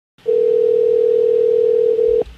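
Telephone line tone: a single steady, even pitch starting about a quarter second in, heard over a phone call as the prank call connects.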